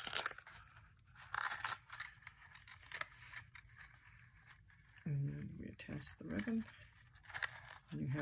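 Ribbon and paper rustling in the hands, in short scratchy bursts, as a crinkled ribbon is pulled through punched holes in a small paper treat box and tied.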